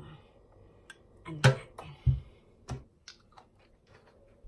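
A metal spoon knocking and scraping against a plastic bowl while stirring a thick, wet, creamy mixture of gelatin cubes and coconut strips: a run of irregular clicks and knocks, the loudest about a second and a half in.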